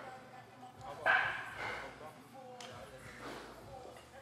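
Faint voices of people in a large gym, with a brief louder call about a second in.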